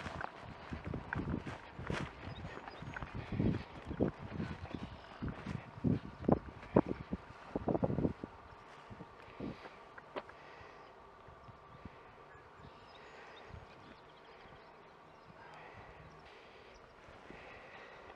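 Footsteps through tall grass: irregular steps and brushing stalks for the first eight seconds or so, then mostly quiet with only an occasional step.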